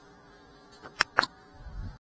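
Cinewhoop FPV drone buzzing, with two sharp clicks about a second in, a fifth of a second apart, then a low rumble swelling near the end.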